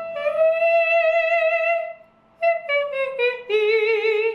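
A woman sings a long, high held note with vibrato, demonstrating a vocal register. After a short break she sings several shorter notes that step down in pitch.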